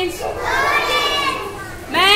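A group of young children saying a word aloud together in chorus, many voices overlapping, fading out near the end.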